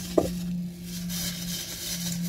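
Thin plastic shopping bag rustling in patches as a hand rummages through it, with a brief thump near the start, over a steady low hum.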